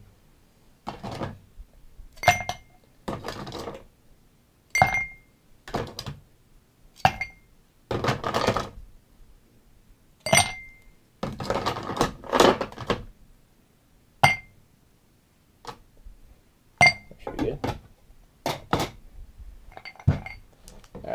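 Ice cubes dropped one by one from metal tongs into glass mixing glasses, each landing with a short ringing clink, about six times. Between the clinks come rougher rattling stretches as the tongs dig more ice out of the ice bucket.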